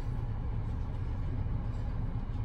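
Steady low rumble of a running car heard from inside its cabin.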